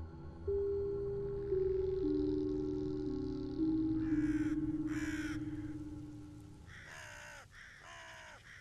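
Dark outro sound design. Low held notes come in one after another, then a series of crow-like caws begins about four seconds in.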